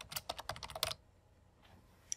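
Computer keyboard typing: a quick run of about ten keystrokes that stops about a second in.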